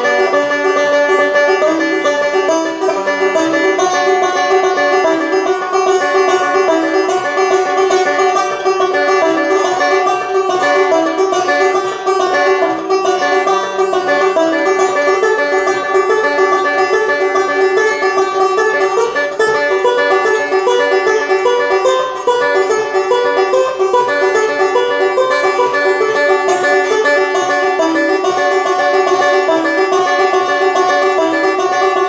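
Solo resonator banjo picked fingerstyle, a steady, unbroken run of quick plucked notes.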